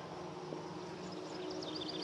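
A steady, faint buzzing hum of a flying insect, with a quick run of faint high bird chirps starting about halfway.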